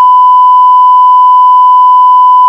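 Loud, steady, high-pitched test-tone beep of the kind played under TV colour bars: one unbroken pure tone.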